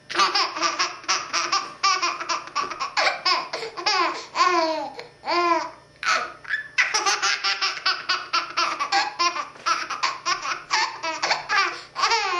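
A baby laughing hard in long bouts of rapid, repeated pulses, with a few falling squeals. The bouts break briefly for breath about two seconds in and again near the middle.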